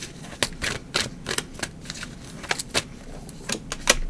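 Tarot deck being shuffled by hand: an irregular run of clicks as the cards slap together, a few each second, with a louder snap just before the end.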